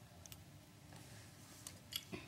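A few faint small clicks of Lego plastic pieces as one is worked off the model: two soft ticks just after the start and two slightly sharper ones near the end.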